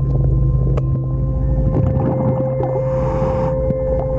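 Underwater sound under a boat hull: a steady mechanical hum with scattered sharp clicks, and a short rush of a diver's exhaled bubbles a little before three seconds in.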